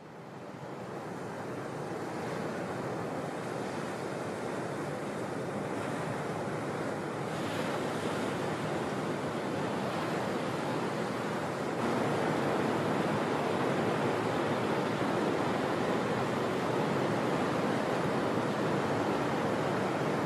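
Ocean surf breaking: a steady wash of waves, fading in over the first couple of seconds and getting a little louder about twelve seconds in.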